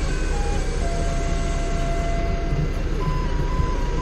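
Doosan 4.5-ton forklift's engine running steadily, heard from inside the operator's cab.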